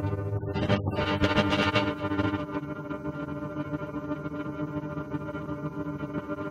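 A guitar chord frozen in the TipTop Audio Z DSP's Grain De Folie granular buffer, Six Grains Stereo algorithm. A few plucked attacks in the first two seconds settle into a steady, sustained chord drone.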